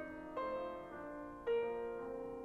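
Grand piano played solo in classical style: ringing chords sustained and dying away, with new notes struck about half a second in and again near the end.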